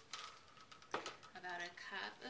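Two short knocks about a second apart as containers are handled on a tabletop, then a voice starts speaking near the end.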